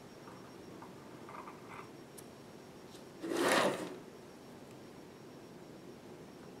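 Faint scraping of an X-Acto blade cutting soft polymer clay along a frame edge, with one short rush of noise, under a second long, about three and a half seconds in.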